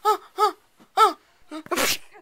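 A young person's voice giving short pitched cries, three in about a second, each rising and falling, then a harsh noisy burst of breath near the end.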